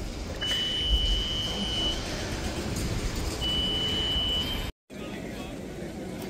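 Two long, steady electronic beeps at one high pitch, the first lasting about one and a half seconds and the second about a second, typical of the motion warning alarm of a boom lift. They sound over a background murmur of crowd voices, and the sound cuts out briefly near the end.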